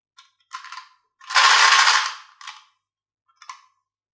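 Glass marbles clicking and clattering inside a clear plastic jar as it is shaken by hand. A few scattered clicks, then a loud dense rattle lasting about a second starting just over a second in, then a few more clicks.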